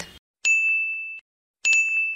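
Electronic chime sound effect for a logo sting: two identical high dings, the first about half a second in and the second near the end, each held briefly and then cut off.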